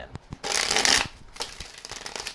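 A deck of tarot cards being shuffled by hand: a few light ticks, then a quick flurry of cards about half a second in, lasting about half a second, then a few softer ticks.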